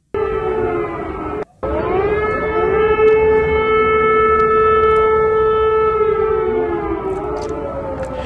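Air-raid warning siren wailing: its pitch rises, holds steady, then begins to fall near the end, with a brief drop-out about one and a half seconds in. It is a test of the air-raid warning system.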